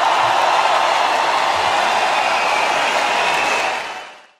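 Large concert crowd applauding and cheering at the end of a song, steady throughout, then fading out just before the end.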